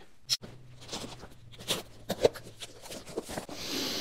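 Faint handling sounds of a cardboard shipping box: scattered taps and rustles, one sharper tap about two seconds in, and a soft papery rustle near the end as the flap is opened, over a low steady hum.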